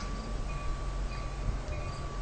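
A bell ringing steadily, a sustained tone with repeated strikes, over the low rumble of a commuter train approaching the station.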